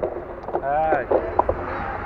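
Wind buffeting the action-camera microphone as a steady low rumble, with a voice speaking briefly near the middle.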